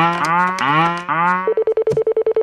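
Cartoon sound effects from a cow-print telephone: four short moo-like tones, each gliding upward in pitch, one after another as its keys are pressed. About one and a half seconds in, they give way to a fast-pulsing ringing tone on a single pitch.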